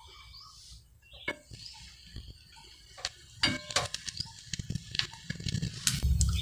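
Bread slices being laid on an oiled tawa: quiet scattered clicks and light taps, coming more often in the second half.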